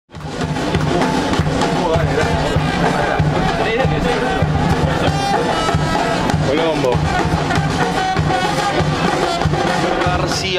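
Music with a steady drum beat and a singing voice.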